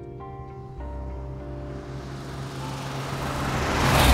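Mercedes-Benz 280 SL's straight-six engine and tyres approaching and passing close by, growing steadily louder to a peak near the end, over background music.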